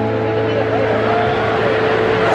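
Live country band holding a steady chord in a gap between sung lines, with crowd voices over it.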